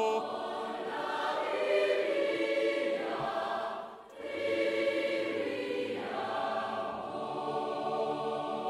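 A choir singing held chords from a concert recording being played back, with a short break about halfway through before the singing resumes.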